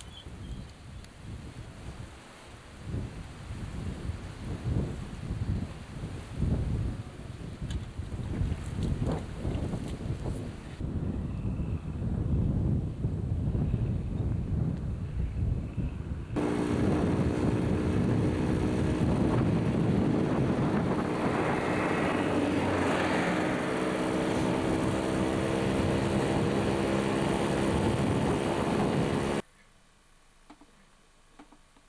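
Gusty wind buffeting the camcorder microphone. From about halfway through, a steady motor drone at one constant pitch takes over and cuts off abruptly near the end.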